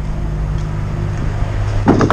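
Steady low hum of a truck's diesel engine running at idle.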